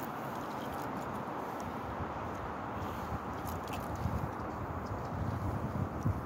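Steady, even outdoor hiss with a few faint ticks scattered through it, and low rumbling on the microphone that builds near the end.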